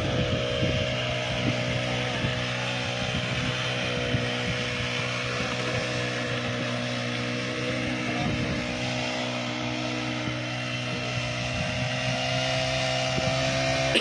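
Small engine of a backpack brush cutter running at a steady speed, driving a weeding attachment that cuts a strip of soil between crop rows.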